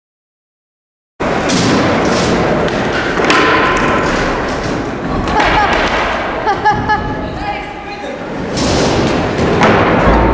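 Skateboard thuds and wheel noise on the floor of a large indoor skatepark hall, mixed with people's voices. The sound cuts in suddenly about a second in, after silence.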